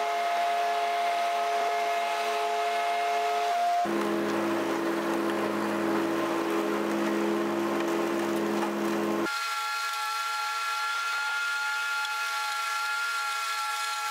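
Agri-Fab Mow-N-Vac leaf vacuum, driven by its own pull-start engine and towed by a Toro lawn tractor with the mower blades engaged, running steadily under load as it picks up leaves. The drone and whine change pitch abruptly about 4 and 9 seconds in, where the footage cuts between runs.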